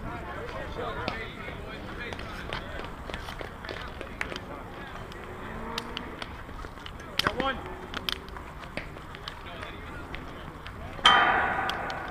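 Distant players' voices and chatter across a softball field, with scattered light clicks and knocks. Near the end comes a sudden loud ringing clang that fades over about a second.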